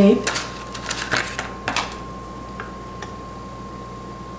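Several quick plastic clicks and crackles over the first two seconds as a roll of red-liner tacky tape is taken from its clear plastic case. After that only a faint steady high tone remains.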